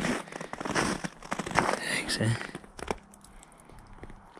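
Footsteps crunching over packed snow and broken slabs of roof ice, a run of crackling crunches that thins out after about three seconds.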